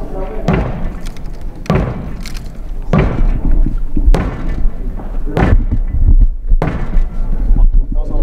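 Six heavy thuds from a throwing-strength drill, about one every second and a bit, each ringing out briefly in a large hall.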